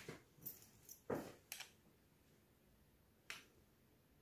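Near silence broken by a few faint, short clicks and taps, four of them in the first second and a half and one more a little after three seconds in.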